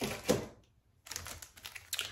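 Clear plastic packaging of wax melt snap bars being handled on a table: a short rustle, a brief pause, then a run of small clicks and crinkles as the packages are moved.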